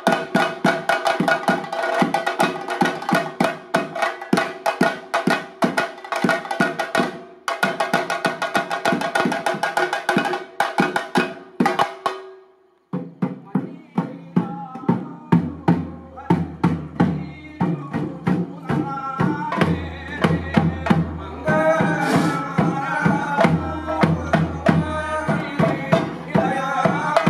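Chenda drums and a small waist drum beaten in a fast, dense roll with a steady ringing tone, stopping suddenly a little before halfway. Then slower drum strokes resume under a man's chanted thottam song, the ritual song of a Theyyam performance.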